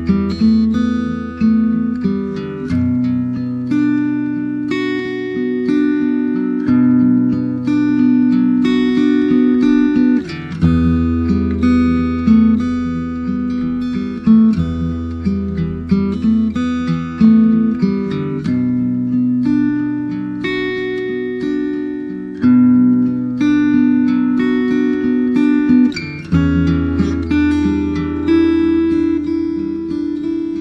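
Acoustic guitar music: a run of picked notes over a low bass note that changes about every four seconds, in a steady repeating chord pattern.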